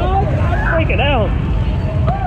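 Street crowd noise: people's voices shouting and calling out, with a couple of rising-and-falling yells near the start and about a second in, over a steady low rumble of traffic.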